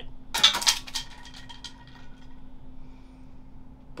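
A brief run of light clattering clicks about half a second in, from hard objects set down on a glass tabletop, then a faint steady hum.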